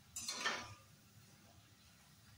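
Metal slotted spoon scraping against a steel wok as frying onion pakoras are turned: one brief scrape of about half a second.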